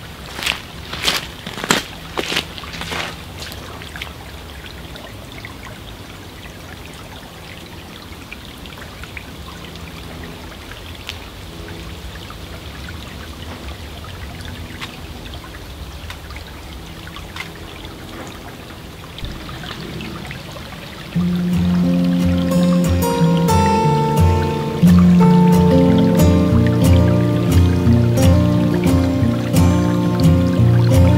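A few footsteps and knocks in the first seconds, then a small woodland stream trickling faintly with quiet tones under it. Background music with a beat comes in loudly about two-thirds of the way through and dominates the rest.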